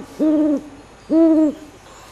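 An owl hooting twice, two short hoots about a second apart, each rising at the start and dropping at the end.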